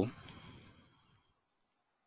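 The tail of a man's spoken word at the very start, then near silence broken by a few faint computer keyboard clicks about a second in.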